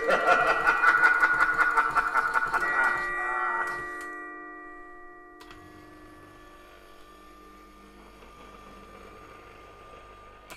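A Halloween prop's recorded soundtrack playing from a Picoboo MP3 prop controller: a long laugh over steady ringing tones. The laugh ends about four seconds in, and the tones fade away over the next several seconds, leaving a faint hiss and hum.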